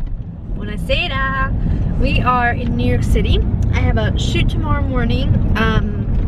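A woman talking inside a moving car's cabin, over the car's steady low road and engine rumble.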